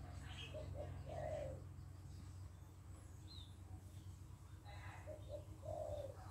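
A dove cooing in two short phrases, each a few brief notes ending on a longer one: one about a second in, the other near the end. A faint low hum underlies the first couple of seconds.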